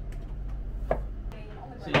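Kitchen knife slicing potatoes on a plastic cutting board: a few separate knocks of the blade meeting the board, the sharpest about a second in.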